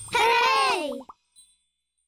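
A humpback whale call: one pitched note that rises and then falls, lasting about a second near the start.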